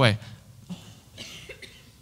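A man's spoken word ends, then in the pause a faint, short cough is heard, twice.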